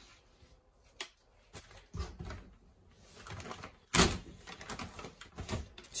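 A crinkled foil insulated box liner and plastic-wrapped meat packs being handled: scattered crinkles, rustles and light knocks, the sharpest about four seconds in.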